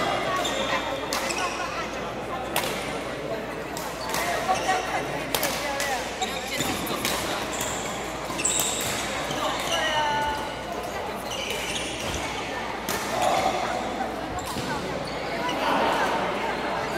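Badminton rackets hitting a shuttlecock in a rally, sharp cracks at uneven intervals, with the squeak of court shoes on the floor and voices in the hall behind.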